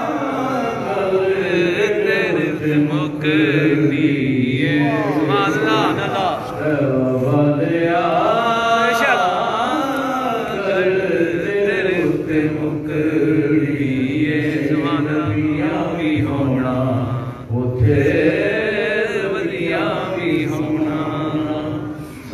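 A man chanting a naat (devotional verse) unaccompanied into a microphone, in long drawn-out melodic phrases that slide up and down in pitch, with one short break about three quarters of the way through.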